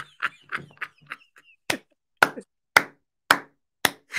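A man laughing into a close microphone in short, breathy bursts, each one sharp and separate, quicker at first and then about two a second.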